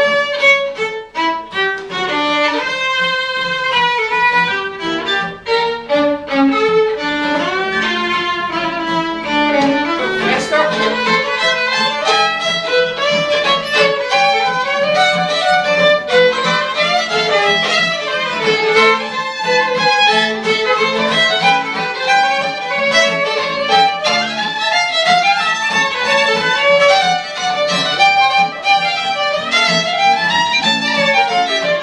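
Two fiddles playing a tune together with acoustic guitar accompaniment, in a live acoustic performance.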